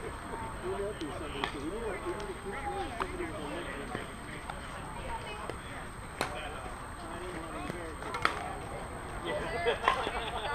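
Voices of players chatting on and around the softball field, too indistinct to make out, with a few sharp knocks and clicks later on.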